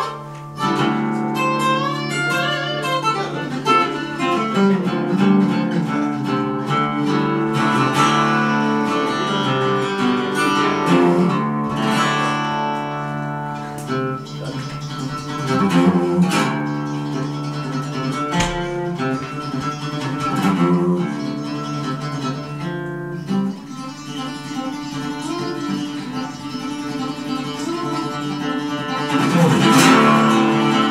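Solo acoustic guitar played fingerstyle as an instrumental intro: picked notes ringing, with a few strummed chords between them.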